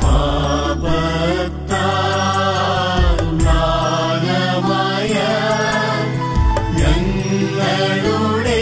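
Malayalam Christian devotional song: a chant-like sung melody over instrumental accompaniment with steady low notes and light percussive clicks.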